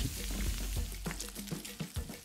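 Beef fillet searing in clarified butter in a very hot carbon steel pan: a faint, crackling sizzle, under background music.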